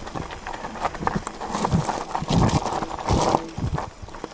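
Chromag Stylus steel hardtail mountain bike descending a rocky dirt trail: tyres crunching over loose stones and the bike clattering and rattling with each knock. The clatter is busiest from about a second and a half in until shortly before the end.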